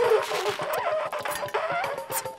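Live improvised music for baritone saxophone, electric guitar and laptop electronics: a squawking pitched line that bends up and down, settling into a held tone near the end, over fast clicks and a quick low pulse.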